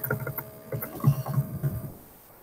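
Typing on a computer keyboard: a run of quick, irregular key taps with soft low thuds, over a faint steady hum.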